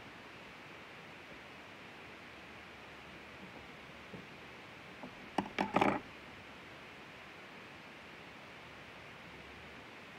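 Faint steady hiss, broken about five and a half seconds in by a quick cluster of a few sharp clicks and taps from hands handling things close to the microphone.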